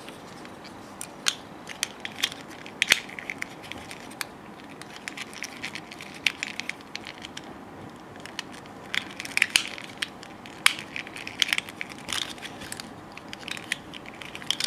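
Parts of a VF-1A Valkyrie toy figure clicking and rubbing as hands handle and adjust its legs: an irregular run of small sharp clicks and snaps, thickest about two to three seconds in and again from about nine to thirteen seconds.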